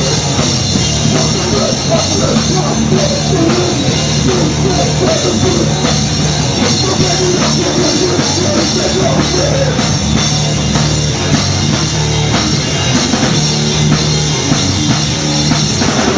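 A hardcore punk band playing live and loud with a full drum kit, a dense wall of sound with no breaks, recorded on a handheld camera in the room.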